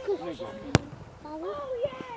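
A football struck hard by a player's foot on a free kick: one sharp thud a little under a second in, among shouting voices.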